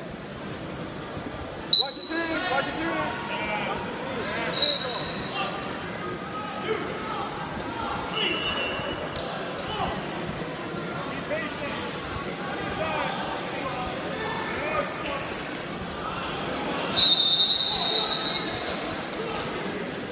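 Crowd chatter in a large gymnasium, broken by short referee whistle blasts: a sharp, loud one about two seconds in, two brief ones around five and eight seconds, and a longer one of about a second near the end.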